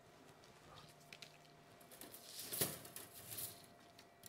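Faint rustling and small clicks of pine needles being plucked by hand from a Japanese black pine bonsai branch, with a louder brief rustle of handling about two and a half seconds in.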